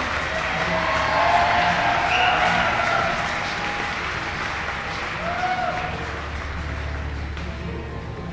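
Audience applause, dying away slowly, while a fiddle plays bowed notes over it.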